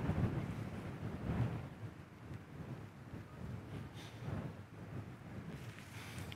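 Wind buffeting the camera microphone: a low, uneven rumble that gusts up and down.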